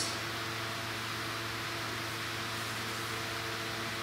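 Steady room tone: an even hiss with a low, constant hum underneath.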